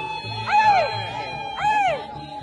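Music with a pulsing low beat and a held tone, over which two short calls rise and fall in pitch about a second apart.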